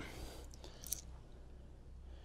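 Faint handling of freshly cleaned coins and a ring in the hands, with one short click a little under a second in.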